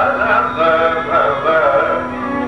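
Carnatic classical music in raga Sri Ranjani: a male voice sings a melodic line with quick, wavering pitch ornaments (gamakas) over a steady drone.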